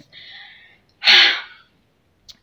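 A woman's audible breath in, then a loud, short, forceful burst of breath about a second in.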